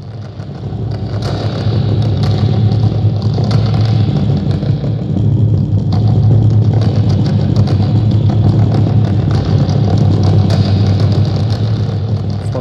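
Soft felt mallets rolled rapidly on a large black wrapped sculpture, played through a loudspeaker, make a loud, dense low rumble. It swells up over the first couple of seconds and then holds steady.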